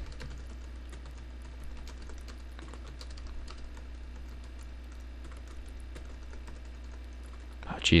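Typing on a computer keyboard: a run of quick, faint keystrokes, irregular in pace. A steady low hum runs underneath.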